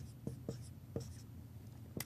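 Dry-erase marker writing on a whiteboard in a few faint short strokes, mostly in the first second, as a box is drawn.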